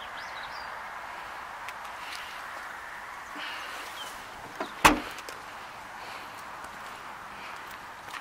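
Vauxhall Corsa hatchback tailgate shut once with a single thud about halfway through, a light click just before it, against a steady background hiss.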